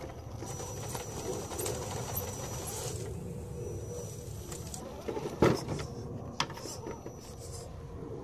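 Electric drive of a 1/10-scale rock crawler whining with a steady high thin tone, with scattered knocks and scrapes and a sharp knock about five and a half seconds in and another about a second later.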